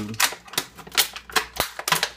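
Small hard plastic pieces clicking and clacking as they are handled, with about six or seven sharp, irregular clicks.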